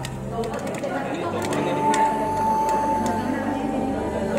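Corn kernels popping now and then with short sharp pops inside a lidded non-stick pan, over people talking in the background.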